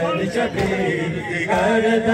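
Group of men chanting a noha, a Shia mourning lament, together in a continuous chant.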